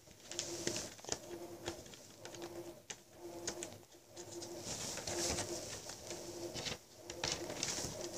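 Cloth rustling and scraping right against the microphone in short irregular bursts. Under it a faint low hum pulses on and off at an even pace, a little faster than once a second.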